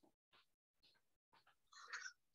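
Near silence on an online-class audio feed, with a few faint brief sounds and a slightly louder one just before the end.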